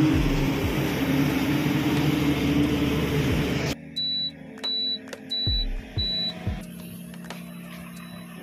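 Engine and road noise of a moving vehicle, cutting off abruptly a little under four seconds in. Four short, high, evenly spaced beeps follow, about two thirds of a second apart, over faint background music.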